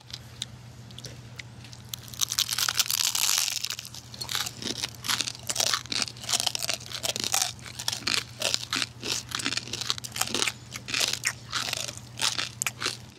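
Close-miked ASMR eating: several people biting and chewing crispy fried food right at a binaural microphone, giving dense crunching that starts about two seconds in and keeps going. A steady low hum runs underneath.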